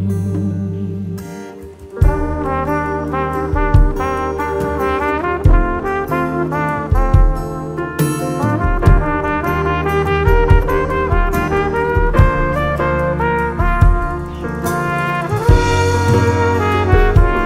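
Band playing an instrumental break in a ballad, a melody line over a bass line and regular drum hits. After a brief lull the full band comes back in about two seconds in.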